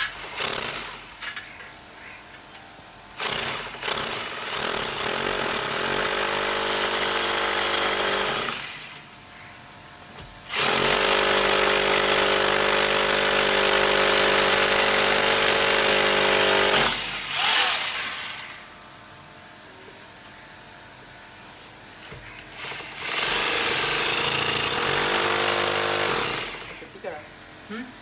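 Electric hammer drill boring into a plastered wall, in three long runs with short pauses between, its motor whining steadily under load.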